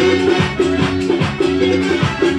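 Loud live band music with a quick, steady drum beat and a short melodic phrase repeating over it.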